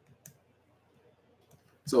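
Near-silent room with a single short click about a quarter second in and a fainter tick near the end, then a man starts speaking.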